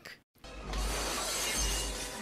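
A long crash of breaking glass with a deep rumble underneath, starting about half a second in, over film score music.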